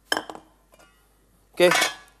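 A stainless-steel steamer basket clinks against its pot: one sharp metallic clink that rings briefly, followed by a few faint clicks.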